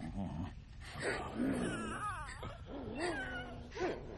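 An animated creature's whining, wailing cries, several in a row, sliding up and down in pitch.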